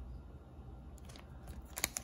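Faint crinkling of a foil baseball card pack wrapper being handled between the fingers, with a few small crackles in the second half.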